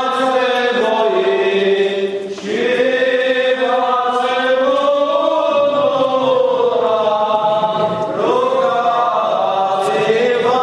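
Eastern Orthodox liturgical chanting during a wedding service: voices sing long, drawn-out melismatic lines that glide slowly from note to note, with a brief breath-pause about two seconds in.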